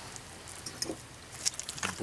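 Faint handling and movement sounds: soft rustling with a few small clicks, the loudest about a second and a half in.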